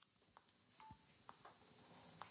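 Near silence: faint hiss with a thin steady high-pitched tone and a few soft clicks.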